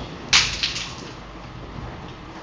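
A single short, sharp crackle about a third of a second in, trailing off into a few faint rustles over quiet room noise.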